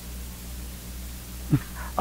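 Steady low electrical hum of the recording between spoken phrases, with one brief vocal sound about one and a half seconds in.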